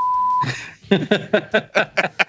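A short, steady electronic beep tone, held for about half a second, followed by men laughing in quick repeated bursts.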